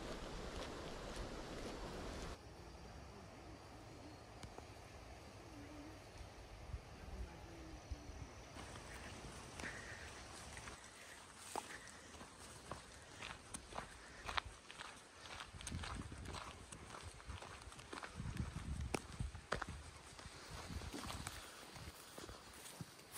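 Faint footsteps of backpackers walking on a sandy dirt trail, irregular steps that grow more frequent in the second half, over soft outdoor background noise that changes abruptly twice.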